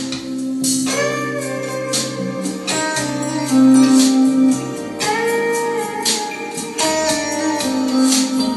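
Recorded music played through Patterson Audio Systems bookshelf loudspeakers with Vifa tweeters, picked up in the room: held instrumental notes, some bending in pitch, over a regular beat.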